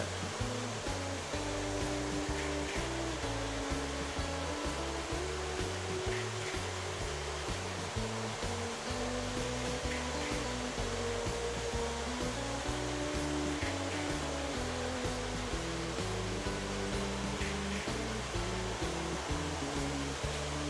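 Several toy electric trains running together on metal three-rail track: a steady whirring rumble of motors and wheels. Music with changing low notes plays underneath.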